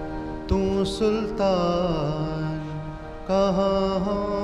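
Sikh Gurbani kirtan: a singer's voice chanting a hymn over sustained harmonium-like drone notes. The voice enters about half a second in, breaks off briefly near three seconds, and comes back.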